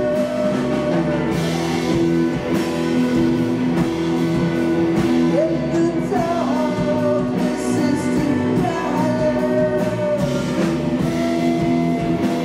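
Live rock band playing: electric guitar, electric bass and violin over drums, with a woman singing lead. Long gliding notes float above a steady, loud band sound.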